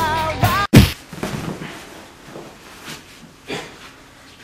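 A pop song with singing cuts off suddenly under a second in, followed at once by one loud thump like a boxing-glove punch, then quieter scuffling and faint thuds.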